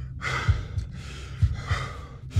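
A man breathing hard, with two heavy, gasping breaths. Low, dull thuds sound under them about a second apart.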